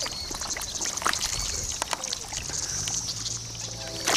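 Irregular splashing and sloshing in shallow, duckweed-covered pond water, a run of short wet clicks and splashes.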